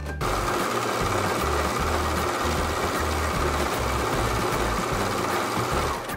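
Singer S010L overlocker running steadily as it stitches through fabric, starting just after the beginning and stopping at the very end.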